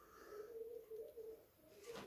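Faint, low cooing calls repeated in short phrases, like a pigeon or dove, heard under near silence.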